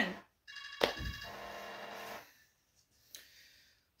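iPhone ringtone playing as a call comes in. It sounds for about two seconds as a steady run of high tones, then stops.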